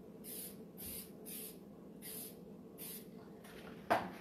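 Aerosol can of spray adhesive misting the back of a stencil in about six short bursts of hiss. A sharp knock comes near the end.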